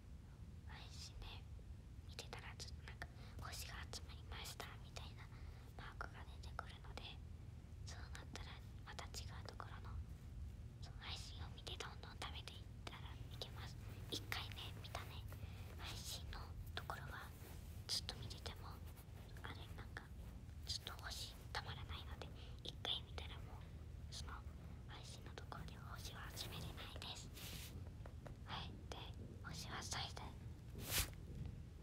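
Soft whispering in short breathy strokes over a low steady hum.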